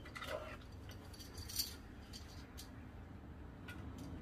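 Steel locking pliers being handled, giving a few faint metallic clicks and clinks about a second apart over a steady low background rumble.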